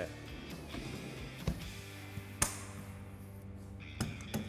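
Soft background music, with a metal trailer drawer being pushed shut: a knock about a second and a half in, then a sharper click about a second later.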